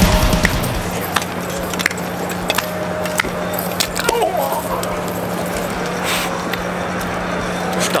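Heavy metal music cuts off just after the start. It gives way to outdoor background noise with a steady low hum and scattered small clicks. A man gives a short shout about four seconds in.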